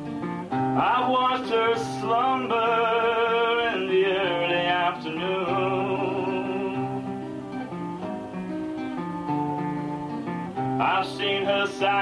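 A man singing a slow song with vibrato on long held notes, accompanied by his own acoustic guitar.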